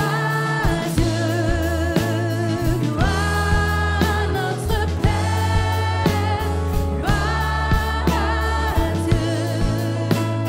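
A live worship band playing: several voices singing a French worship song with long held notes, over keyboard, bass and a steady drum beat.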